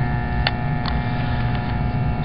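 Steady electrical hum from the recording, with two light clicks about half a second and a second in as the handheld camera is moved close to the face.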